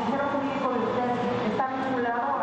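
Speech only: a woman's voice asking a question.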